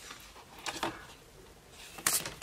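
Large glossy photo cards being handled by hand: a couple of soft card-stock rustles and slides a little under a second in, otherwise quiet.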